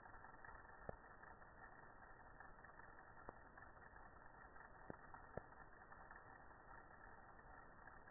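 Near silence: a faint hiss with a few faint, scattered clicks.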